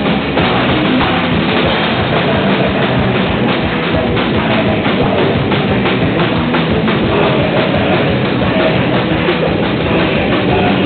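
Live rock band playing loud and without pause: electric guitar over a drum kit.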